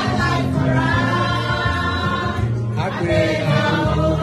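A group of people singing together, with held notes, over music with a low bass line.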